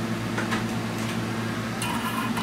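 Steady fan hum with a few faint light ticks over it.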